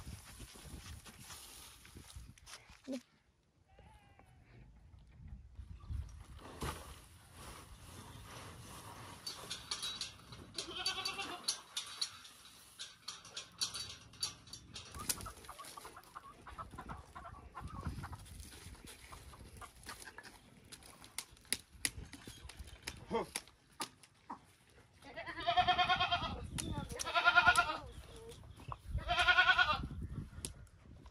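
Farm livestock calling: three loud, long, wavering calls near the end, with a fainter call or two earlier, over scattered knocks and shuffling in the yard.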